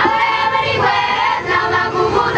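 A children's choir singing, several voices together on held notes.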